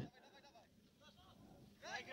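Near silence, with a faint, distant call, voice-like and pitched, about a second in. A man's voice begins near the end.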